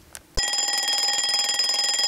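Alarm clock ringing: a short click about a third of a second in, then a steady, rapidly pulsing ring of several held tones.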